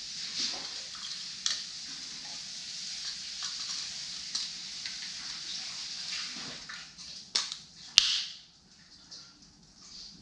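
A few sharp clicks and taps from a small camera on a flexible tripod being handled, over a steady hiss. The loudest click comes about eight seconds in, and the hiss stops just after it.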